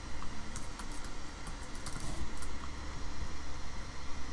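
Computer keyboard keystrokes, a scattered run of faint taps, over a low steady hum.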